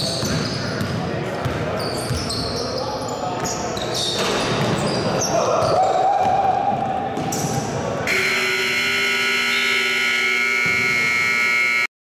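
Basketball play in a gym hall: sneakers squeaking, the ball bouncing and players calling out. About eight seconds in, a steady scoreboard horn starts suddenly and holds for several seconds as the game clock runs out.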